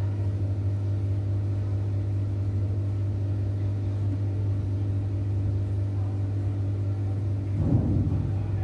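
A steady low hum of constant pitch with faint overtones, unbroken throughout, and one brief louder sound near the end.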